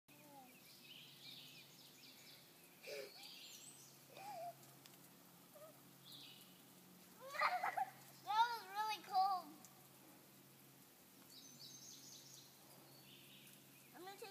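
A young girl's high-pitched squeals and sing-song calls, loudest a little past halfway, over a faint steady outdoor hiss.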